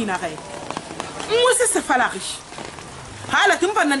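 Speech: a woman talking in two short phrases over a steady background hiss.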